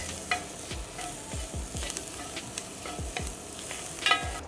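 Diced onions, peppers and garlic sizzling in olive oil in an enameled Dutch oven, stirred with a spatula that scrapes and clicks against the pan bottom at irregular moments.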